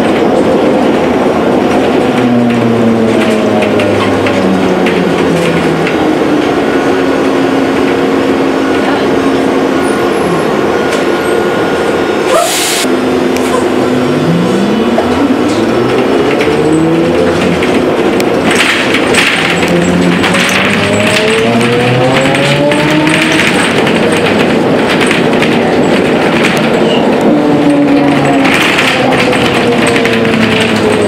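Ikarus 280T articulated trolleybus's electric traction drive whining, heard from inside the passenger cabin over running rattle and road noise. Its pitch climbs in steps as the bus speeds up and glides down and back up as it slows and pulls away again. There is a single sharp knock about twelve seconds in.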